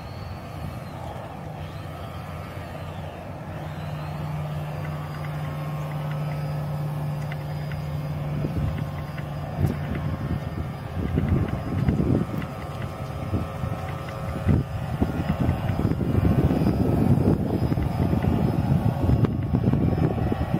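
Electric motor of an RC model Coast Guard rescue boat, driving a low-pitch three-blade propeller, running steadily at speed out on the water with a low hum. From about halfway through, a rough, irregular rushing noise builds and grows louder toward the end.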